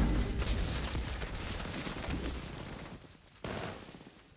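Film battle sound: scattered gunfire and impacts over a low rumble, fading down steadily, with one sudden sharp shot or blast about three and a half seconds in.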